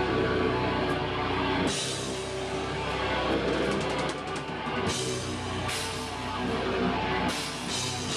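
A deathcore band playing live at full volume: distorted guitars and bass over a pounding drum kit, with several cymbal crashes and a quick run of rapid drum strokes in the middle.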